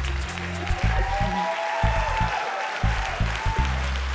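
Audience applauding over music with a deep bass line and a few long, slowly gliding tones.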